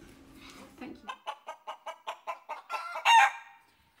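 A chicken clucking in a quick, even run of about six clucks a second, ending in one louder, drawn-out call near the end.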